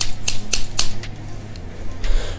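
Household scissors snipping: about four quick blade clicks, roughly a quarter second apart, in the first second, then fainter clicks.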